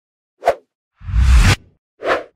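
Sound effects of an animated intro. A short, sharp pop comes about half a second in. About a second in, a whoosh swells up and cuts off abruptly half a second later.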